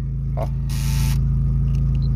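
Flip-out screen of an aftermarket car DVD/radio head unit making a brief mechanical noise, about half a second long, as it is pulled out. The noise is the sign of a fault that has developed in the screen mechanism. A steady low hum from the idling car engine runs underneath.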